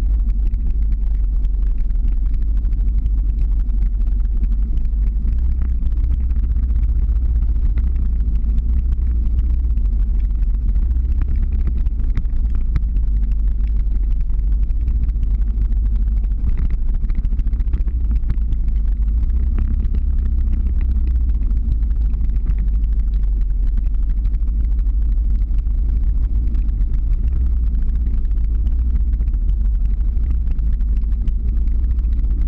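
Steady low rumble of a motor vehicle driving slowly uphill, with engine and road noise heard from the vehicle carrying the camera.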